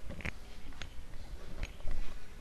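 Handling noise from handheld microphones: scattered short clicks and knocks, with a brief rasp about a quarter second in.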